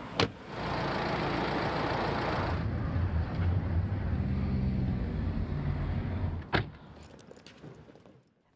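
A car door shuts with a sharp click, followed by a car driving: steady engine and road noise heard from inside the cabin, with a low hum. A second sharp knock comes about six and a half seconds in, and the sound then fades.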